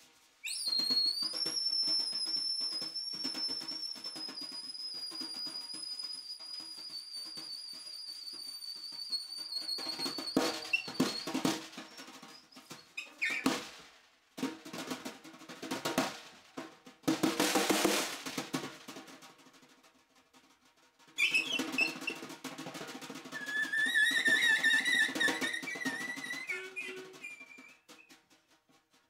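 Free-improvised saxophone and metal-shell snare drum: the saxophone holds one piercing, very high squeal for about ten seconds over dense, irregular stick strokes and rolls on the snare. The saxophone then drops out while the snare plays loud, ragged bursts, and comes back a few seconds before the end with a rising high squeal.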